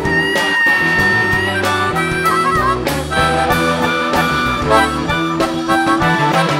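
Live power-trio rock (electric guitar, bass guitar and drums) playing an instrumental passage. A high, sustained guitar note is held for about a second near the start, followed by quick runs of notes over the bass and drums.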